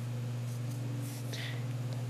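A steady low hum with a few evenly spaced overtones, unchanging throughout, with a faint brief rustle about one and a half seconds in.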